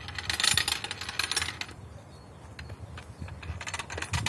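Mechanism of a homemade wooden catapult clicking as it is worked by hand: a rapid run of sharp metallic clicks for about a second and a half, then slower scattered clicks.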